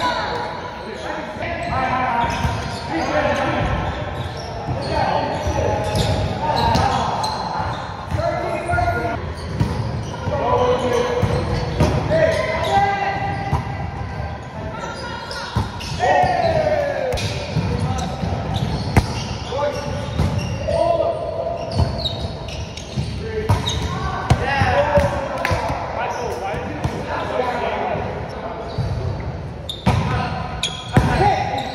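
Volleyball players' voices calling and talking, echoing in a large gym, with scattered sharp knocks and thuds from the ball being hit and landing on the hardwood court.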